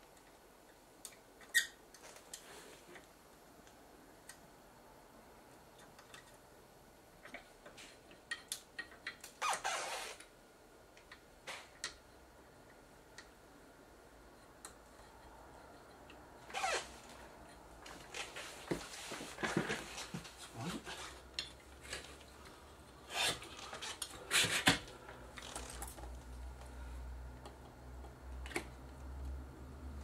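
Scattered small clicks, taps and rubbing as a new electrolytic capacitor's leads are pushed through the holes of a TV power supply circuit board and the board is handled, with the sounds coming more often in the second half.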